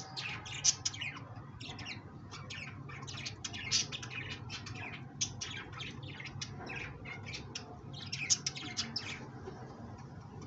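Many short, high chirps from small birds, coming thick and fast, with louder clusters near the start, at about four seconds and after eight seconds. A steady low hum runs underneath.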